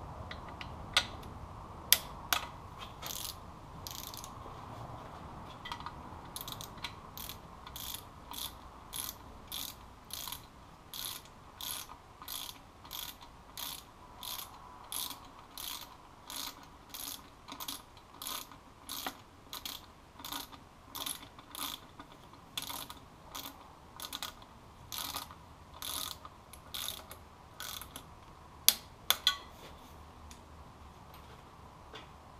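Ratchet wrench clicking as small M6 bolts are run in and tightened, in an even run of about two clicks a second; a few sharper, louder clicks near the end.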